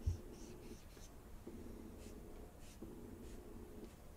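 Broad felt-tip marker drawing on sketchbook paper: a knock right at the start, then several long strokes, each about a second, with a faint squeaky buzz.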